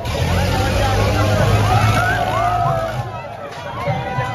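Fairground swing ride in motion: a steady low motor hum under the chatter and shouts of a crowd of riders, with music playing; the hum eases off near the end.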